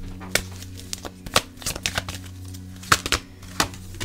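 Tarot cards being drawn and laid down by hand: a series of irregular sharp clicks and taps of long fingernails and card edges on the cards and table.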